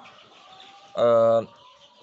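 A man's drawn-out hesitation "eh" about a second in, over faint bird calls in the background.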